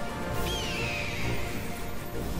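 Background music with a single bird-of-prey screech about half a second in, starting high and gliding down in pitch for about a second.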